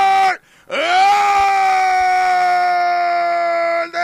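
Radio football commentator's drawn-out goal shout, the long held 'gooool'. It breaks off briefly near the start, then is held again for about three seconds, slowly falling in pitch.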